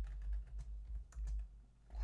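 Typing on a computer keyboard: an irregular run of light key clicks over a steady low hum.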